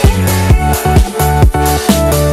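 Instrumental passage of a Eurodance track: a kick drum on every beat, about two a second, under sustained synth chords.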